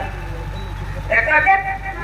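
A man's voice through a stage PA system: a short spoken exclamation about a second in, over a steady low hum.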